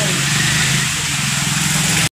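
A steady low motor hum under a loud, even hiss.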